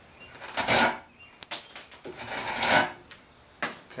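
Drawknife taking big skewed slicing cuts across a wooden Windsor chair seat: three strokes of the blade through the wood, a short one about half a second in, a longer one in the middle and a brief one near the end, with a single sharp click between the first two.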